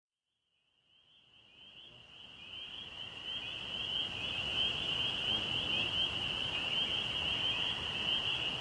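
Outdoor nature ambience fading in from silence: a steady, high, chirring animal chorus over a soft wash of noise that builds over the first few seconds.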